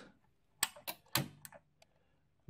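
Several short, sharp clicks in irregular succession from the controls of bench electronics test equipment being switched.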